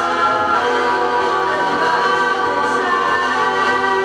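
A pop song playing from a 7-inch vinyl single on a turntable: a group of voices singing in harmony over the backing band, at a steady level.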